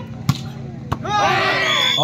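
A volleyball struck hard by hand: one sharp smack about a third of a second in and a lighter hit just before one second. Raised voices follow in the second half.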